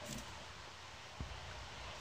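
Faint handling of a crochet hook and cotton thread over a low steady hiss, with one soft click a little over a second in.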